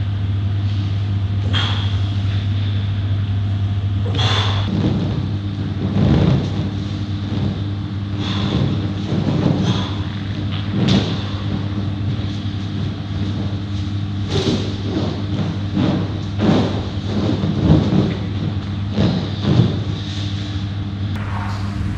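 Irregular dull thuds and bumps from a person exercising on a mat and standing on an inflatable exercise ball, more frequent in the second half, over a steady low hum.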